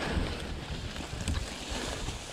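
Mountain bike pushing through tall overgrown grass and brambles: stems swishing against the bike and rider, tyres rolling on the dirt with a few small clicks and rattles, under low wind rumble on the camera microphone.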